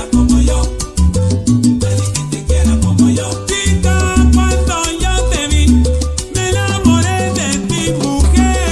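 Salsa music played loud over a dance sound system.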